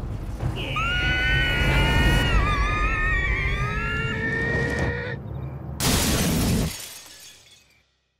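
Cartoon soundtrack: several high, wavering cries overlap for a few seconds over a low rumble. About six seconds in comes a loud crash, which then fades out to silence.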